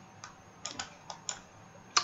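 Light clicks from a computer keyboard and mouse, about six spread irregularly over two seconds.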